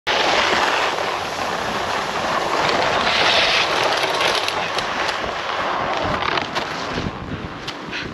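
Snowboard sliding over packed snow: a steady scraping rush from the board, with wind on the microphone, easing off near the end with a few short scrapes or knocks.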